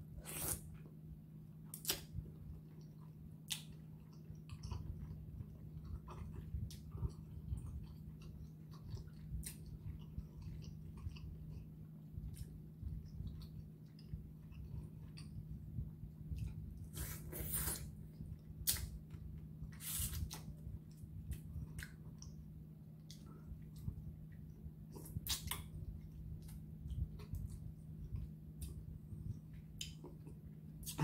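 Close-up chewing of soft seafood-boil food, with wet mouth smacks and clicks now and then, the strongest a little past the middle, over a steady low hum.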